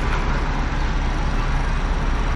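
Steady low rumble and hiss inside a Jeep Wrangler's cabin while it sits idling at a red light.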